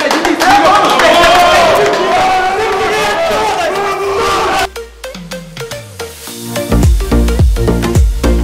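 A group of men shouting together in a team huddle for about four and a half seconds, then a sudden cut to electronic dance music: a falling bass sweep, followed by a heavy, regular bass beat near the end.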